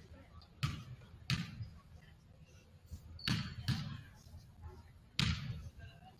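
Basketball bouncing on a hardwood gym floor, five separate bounces at uneven intervals, each a sharp smack with a short echo in the hall.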